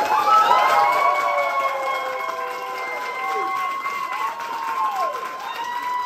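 Audience applauding and cheering, with long whoops rising over the clapping, some dropping away at their ends.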